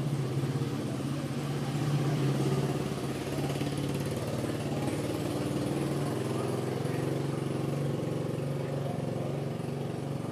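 An engine running steadily at idle, with a low, even hum.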